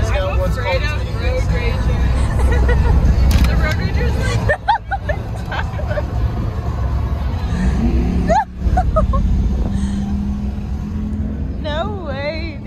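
Steady low road rumble inside a moving car's cabin, with people's voices and some music over it; the sound drops out briefly twice.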